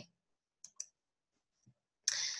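Near silence broken by two faint clicks in quick succession about two-thirds of a second in, typical of a computer mouse button advancing a presentation slide.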